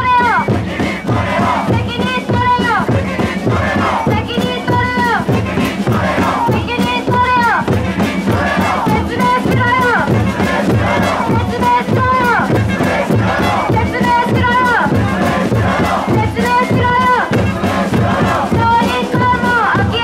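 Call-and-response protest chanting: a woman shouts each line into a handheld microphone and a crowd shouts it back, over a steady drum beat. Each line ends on a falling pitch, and the cycle repeats about every two and a half seconds.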